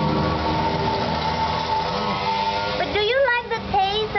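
Steady hum of a vehicle engine running in the street, with a faint wavering tone, then a person's voice talking briefly from about three seconds in.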